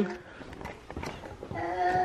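A puppy whining: one long, steady, high whine that starts about one and a half seconds in.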